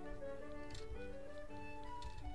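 Background concertina music: a slow melody of held notes that change pitch in steps, with a faint click about midway.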